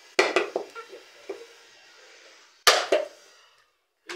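Hard knocks on a whole coconut's shell as it is struck to crack it open: a quick run of sharp knocks at the start, a lighter one a little past a second in, and one loud knock near three seconds.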